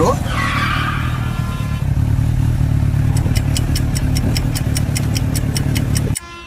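Kawasaki Ninja H2 superbike engine running: a short rise in pitch just after the start, then a steady idle. From about halfway, a fast, even ticking of roughly six clicks a second sits over it.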